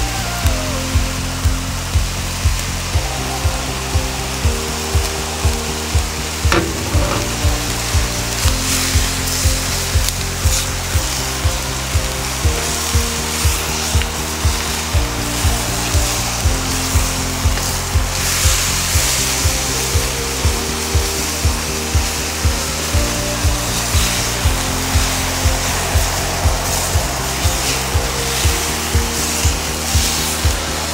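Background music with a steady beat of about two a second, over the sizzle of pork mince frying in a carbon steel wok and a spatula scraping through it.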